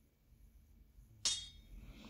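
Near silence, then a single short, bright clink about a second in, ringing briefly as it fades.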